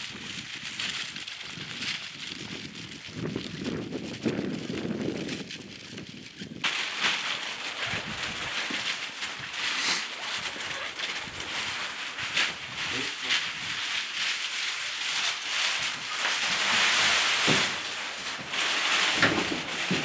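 Footsteps and crinkling of plastic bags being carried, with many small clicks and scuffs. The sound changes abruptly about a third of the way in.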